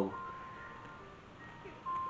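A faint simple tune of plain electronic tones, single notes held for a fraction of a second up to about a second, over quiet room tone; a brighter note comes near the end.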